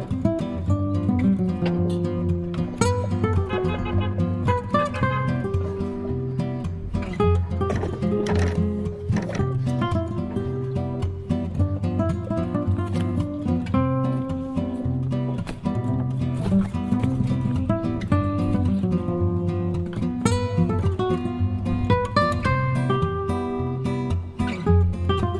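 Background music played on acoustic guitar, with plucked and strummed notes at a steady level throughout.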